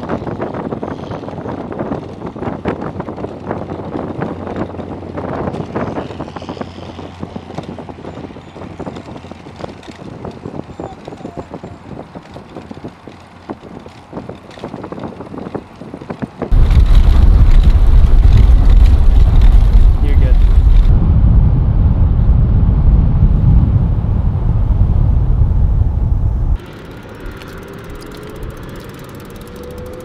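Wind rushing over the microphone with road noise, recorded at speed from a moving vehicle. About halfway through it cuts to a much louder low wind rumble for about ten seconds, then drops suddenly to a quieter steady noise near the end.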